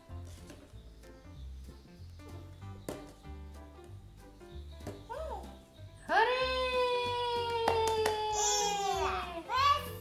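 Quiet background music with a steady low beat. About six seconds in, a young child lets out one long, slightly falling vocal sound lasting about three seconds, the loudest thing here.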